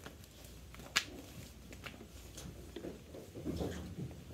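Hands handling harness straps and a long line: soft rustling, with one sharp click about a second in and a few fainter ticks.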